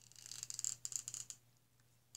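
Hot glue gun worked along the rim of a knit sock stretched over a bowl: a fast, scratchy crackle of small clicks and rustling that lasts about a second and a half, then stops.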